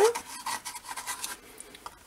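Grey pencil, its tip wet from the water jar, scribbling on collaged paper: a run of quick strokes, strongest in the first second and fading toward the end.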